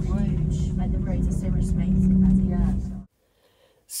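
Steady low rumble with a constant hum inside a descending aerial tramway cabin, with faint voices of passengers mixed in. The sound cuts off suddenly about three seconds in.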